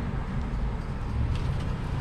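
Steady low rumble of road traffic, swelling slightly a little past a second in, with a few faint clicks.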